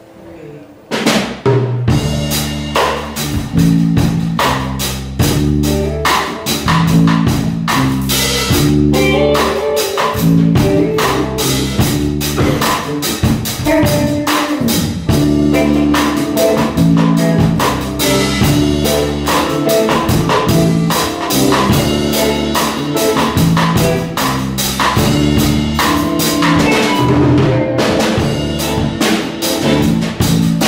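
Live band starting up about a second in: drum kit and guitar playing an instrumental groove with a steady beat.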